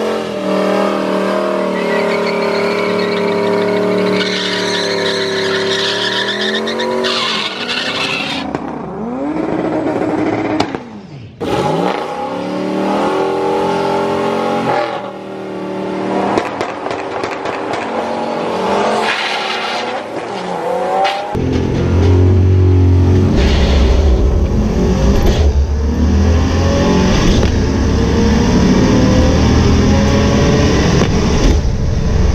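Turbocharged Mustang Bullitt two-valve V8 held at steady revs on the starting line for several seconds against the e-brake to build boost, then revs falling and rising again. About 21 s in, the sound changes to a louder, deeper engine drone heard from inside a car.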